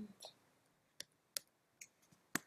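About three faint, separate clicks of computer keyboard keys, spaced a fraction of a second apart in a near-silent room.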